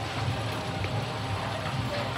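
Steady background noise with a low rumble, no distinct events.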